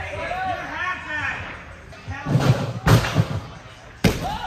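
A gymnast's running steps thudding on a rod-floor tumbling strip a little after two seconds in, ending in a loud slam from the punch takeoff near the three-second mark. Voices chatter in the first half.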